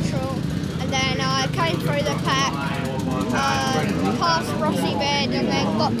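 Background voices over a steady, low drone of motocross bike engines running.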